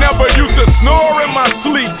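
Hip hop track: rapping over a heavy bass beat, with swooping, sliding sounds running through it. The bass drops out for about a second midway and comes back at the end.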